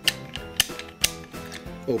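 Hinged plastic lid of a small toy barbecue being worked open and shut by hand: three sharp plastic clicks, about half a second apart.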